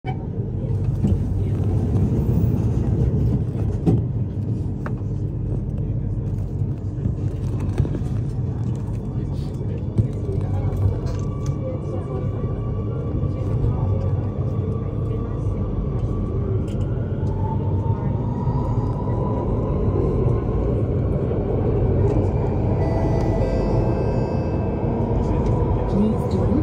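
Circle Line C830C metro train heard from inside the car as it pulls out and picks up speed into the tunnel: a steady low rumble of wheels on rail, with a motor whine that rises in pitch about halfway through.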